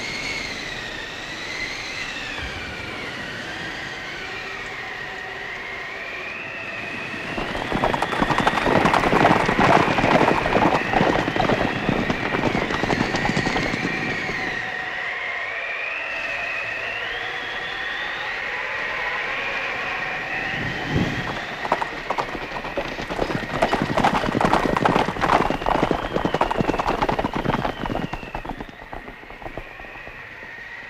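Storm wind howling, its whistle rising and falling continuously, with two long, louder rushes of noise from the gale.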